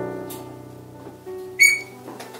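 Solo piano music, held chords fading away. A brief, sharp, high-pitched tone cuts in near the end and is the loudest moment.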